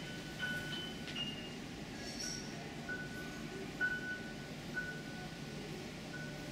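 Soft background music: light, chime-like notes at one pitch recur about once a second over a low murmur of room noise.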